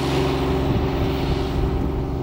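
An engine running steadily under rushing wind noise.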